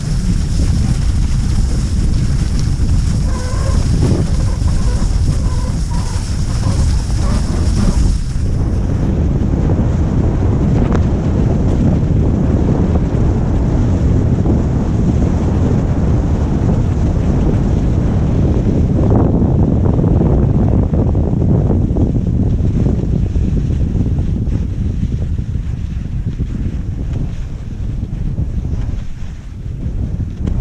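Wind rushing over the microphone of a skier gliding fast downhill on cross-country skis, with the skis hissing on the snow. It eases a little near the end as the skier slows.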